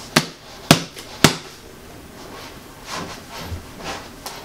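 Three sharp slaps on a lace-up boxing glove, about half a second apart, followed by faint rustling as the glove is handled.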